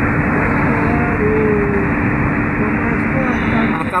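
Steady road and engine noise heard inside a car's cabin while it cruises at highway speed, with a constant low hum under the tyre rumble.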